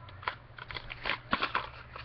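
Plastic packaging being handled, a run of short, irregular crackles and clicks.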